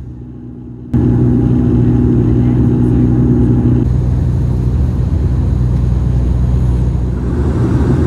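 Dash 8 Q300 turboprop engine and propeller drone in cruise, heard in the cabin beside the engine: a steady low hum with several steady tones. It is quieter at first, then jumps suddenly to loud about a second in.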